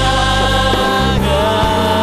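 Christian worship music: many voices singing together over an instrumental accompaniment, holding long notes with a steady bass beneath.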